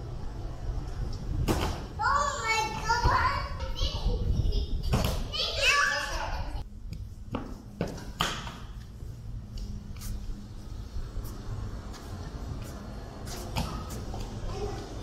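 A young child's high-pitched voice calls out twice in the first half, without clear words. Around it come several short thumps of a barefoot child landing jumps on gym boxes, stacked rubber weight plates and benches. A steady low hum runs underneath.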